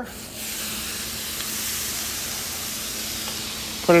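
Water hissing and sizzling as it boils off the hot steel cooking surface of a Blackstone flat-top griddle, a steady hiss that runs until speech near the end.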